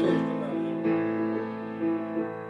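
Grand piano played slowly: a few melody notes held over a sustained low note.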